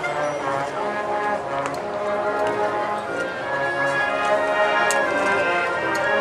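Concert band of woodwinds, brass and percussion playing a passage of held chords over a low brass bass line.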